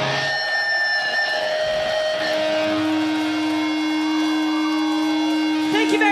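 A live heavy metal band's electric guitars letting long, held notes ring out with no drumbeat, as a song winds down to its end. Near the end a wavering pitched sound comes in over the held notes.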